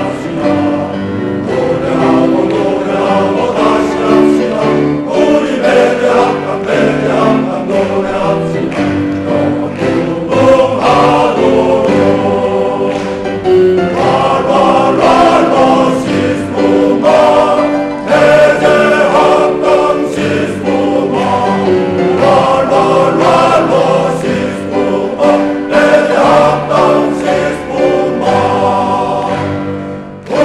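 Men's choir singing a school song, with piano accompaniment.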